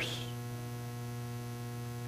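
Steady electrical mains hum: a low buzz with a stack of even overtones that holds unchanged throughout.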